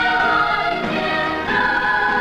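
Music: a choir singing long held notes, moving to a new chord about one and a half seconds in.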